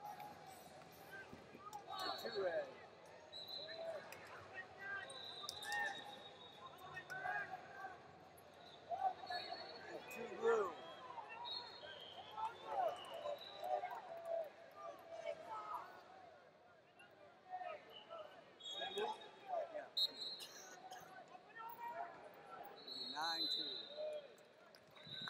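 Wrestling arena ambience: scattered, unintelligible shouting from coaches and spectators, with repeated short, high-pitched whistle-like tones and occasional thuds from bodies hitting the mat.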